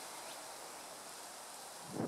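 Faint, steady outdoor ambience: an even high hiss of insects in the background.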